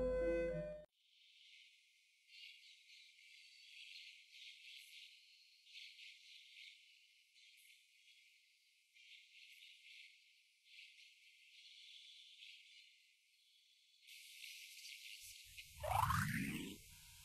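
Piano music that cuts off about a second in. It is followed by faint, thin, high-pitched ticking and crackle. Near the end a rising whoosh comes in.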